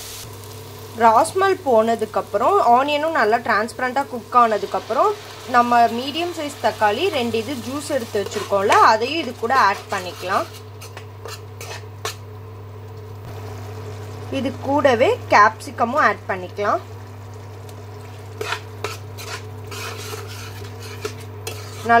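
Spatula stirring and scraping a frying onion-tomato masala in a metal pan, with a sizzle underneath. The scraping comes in squeaky bursts, pausing for a few seconds around the middle and again near the end, over a steady low hum.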